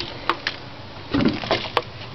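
Handling noise from a homemade wooden slingshot as its red pouch is drawn back on rubber tubing: a few light clicks and knocks against the wood, with a short rustle about a second in.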